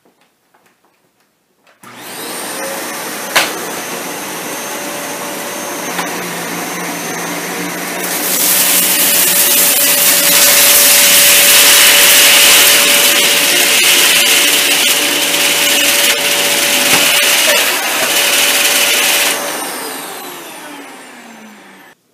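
Dyson Cinetic Big Ball upright vacuum cleaner switched on about two seconds in and running steadily with a constant whine. It grows louder and hissier from about eight seconds in as it is pushed across the carpet through lentils, beans and Fruit Loops. It is switched off near the end, the motor's pitch falling as it spins down.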